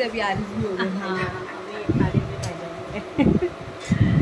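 People talking indistinctly in a room over a steady buzzing hum.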